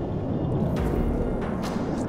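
F-22 Raptor's twin engines running at high thrust, a steady low roar, as the jet powers out of a Cobra maneuver into a vertical climb.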